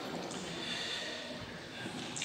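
A pause in a man's talk: only faint room noise between phrases.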